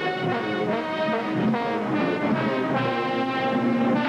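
Marching band brass section, sousaphones and trombones among it, playing loud chords; the notes are held longer in the second half.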